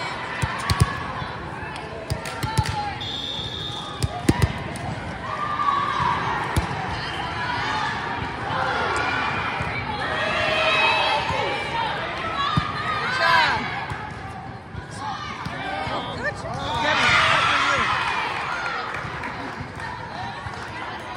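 A volleyball is hit and bounces on a gym floor several times in the first few seconds, each contact a sharp smack. Then girls' and spectators' voices call out and cheer, loudest around the middle and again a few seconds before the end.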